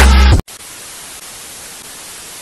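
Loud intro music with a heavy bass beat cuts off about half a second in, followed by a steady hiss of TV static as an editing effect.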